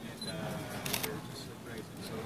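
Voices of people talking in the background, with one short, sharp click about a second in, a camera shutter.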